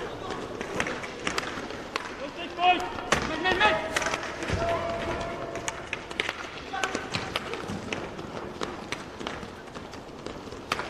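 Inline roller hockey play in an arena: repeated sharp clacks of sticks, puck and skates on the rink floor and boards, with short shouts from players and spectators, loudest a few seconds in.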